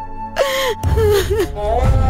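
A woman sobbing, with a sharp gasping breath and a few short wavering, breaking cries. Dramatic background music with a low steady drone and held tones comes in about a second in.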